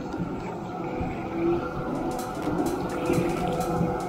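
A tram passing close by on a wet street: a steady whine from its motors and wheels over a rushing noise, with a few sharp clicks in the second half.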